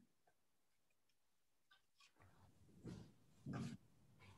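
Near silence on a video call, broken by two faint short noises about three seconds in.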